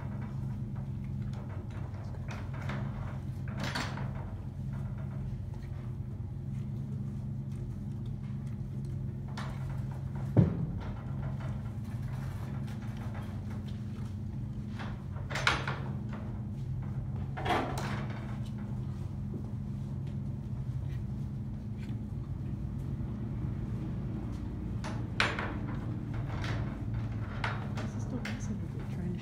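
A horse working the latch of its wooden stable gate with its mouth: the metal latch and gate clack and knock now and then, about six sharp knocks spread out, the loudest about ten seconds in. A steady low hum runs underneath.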